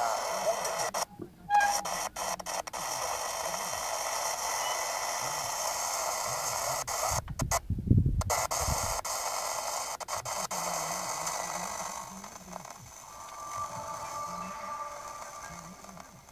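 Hiss and crackle from a portable TV's speaker tuned to a weak, fading analogue TV sound signal from a distant station, with faint broadcast audio breaking through now and then. The hiss drops out briefly about a second in and again near eight seconds, where a low thump is the loudest sound.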